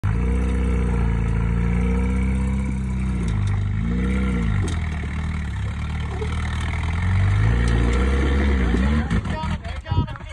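Toyota pickup rock crawler's engine working hard as the truck climbs a steep rock ledge, its revs swinging up and down several times as the driver feeds throttle, then dropping back about nine seconds in.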